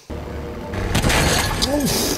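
Film soundtrack of logs crashing off a logging truck onto a highway: a loud crashing, shattering noise over dramatic score music, building up a little under a second in.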